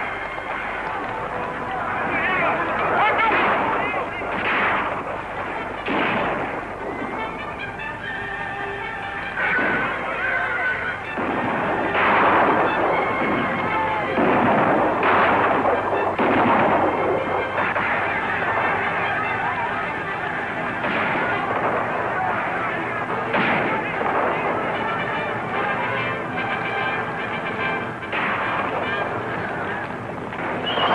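Film battle soundtrack: rifle shots going off every few seconds over orchestral score, with shouting voices.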